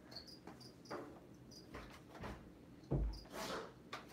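Crickets chirping in short, repeated high chirps. About three seconds in, a low thump and a brief scrape as the lid of a snake enclosure is handled.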